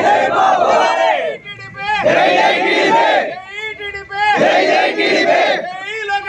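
A crowd of men chanting political slogans in call-and-response: one man shouts a line and the group shouts back in unison, about one exchange every two seconds.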